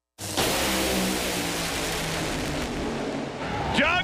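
Top Fuel dragster engines running at full throttle, a loud, steady, dense engine noise that starts abruptly. A man's voice begins near the end.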